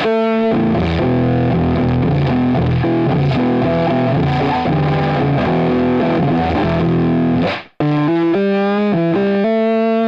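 Electric guitar played through Guitar Rig 5's 'Horrible Punk Tone' preset, a Skreamer overdrive into the Jump amp model, giving a distorted tone with long sustain. Chords and notes ring on, the sound cuts out briefly just before eight seconds in, and then a run of single notes follows.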